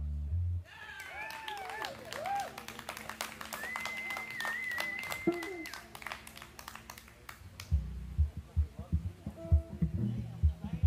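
A live rock band's closing chord cuts off just after the start, followed by scattered clapping, whoops and one long whistle from a small audience. Near the end, short low notes start up again from the band's instruments.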